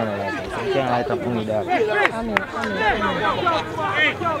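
Several people talking and calling out at once, their voices overlapping into chatter, with a couple of short sharp clicks about halfway through.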